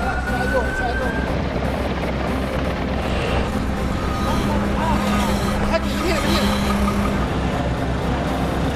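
Commotion at a firefighters' rescue drill: many voices talking and calling over vehicle noise. A steady low hum comes in about halfway through and stops near the end.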